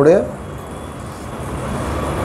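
The tail of a spoken word, then steady low background noise with a faint hum, growing slightly louder toward the end.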